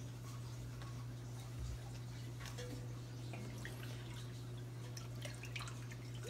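Faint scattered ticks and small pops from milk and rice heating in an enamelled pot, over a steady low hum.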